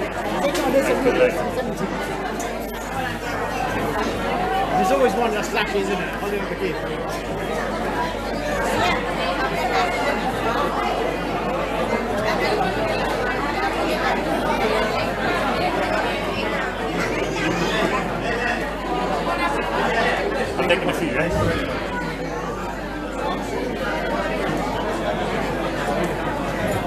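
Many people talking at once in a large hall: a steady hubbub of overlapping conversation with no one voice standing out.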